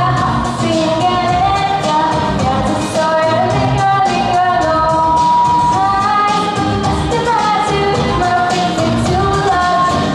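A girl singing a song into a microphone, amplified over a pop-style backing track with a steady beat. She holds one long note about halfway through.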